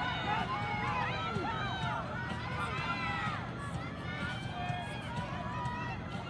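Spectators at the trackside shouting and calling encouragement to the runners, several raised voices overlapping throughout.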